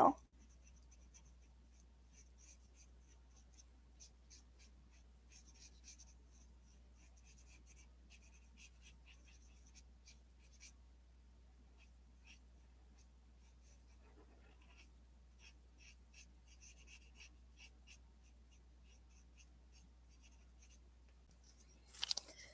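Felt-tip art marker stroking across paper: faint, irregular short scratchy strokes as the shoes of a drawing are coloured in.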